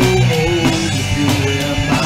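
Instrumental passage of a rock power ballad: a lead guitar plays a melody with bending notes over drums and sustained low notes.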